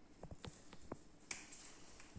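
A quick run of faint small clicks from a whiteboard marker being handled and its cap worked, with most of them in the first second and a half.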